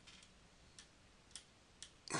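Near silence broken by a few faint, sharp clicks spaced about half a second apart, from a computer mouse as the code view is scrolled.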